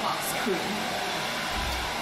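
A steady rushing noise that does not change, with one short spoken word at the start and faint voices under it.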